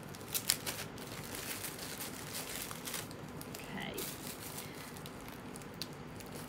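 Plastic bag crinkling and crackling as it is undone and handled by hand, in many short irregular crackles.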